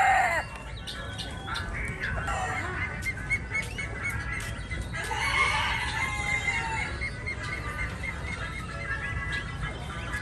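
Caged chickens calling: a rooster's crow trails off just after the start, followed by scattered clucks and chirps. A louder drawn-out call comes about five seconds in, and a run of quick, high, repeated peeps follows it.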